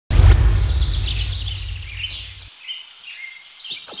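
A sudden deep boom at the very start that fades over about two seconds and then cuts off, with birds chirping above it; quick, falling chirps come through clearly near the end.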